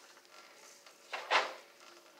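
A single brief clatter a little over a second in, over a faint steady hum.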